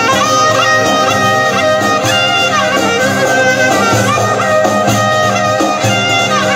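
Live Albanian saze folk music: an ornamented lead melody with quick bends and turns over steady instrumental accompaniment.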